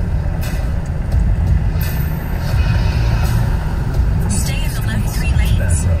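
Steady low rumble of road and engine noise inside a moving car's cabin, with the car radio playing voices and music underneath.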